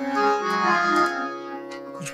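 Harmonium playing held reed notes over a tanpura drone.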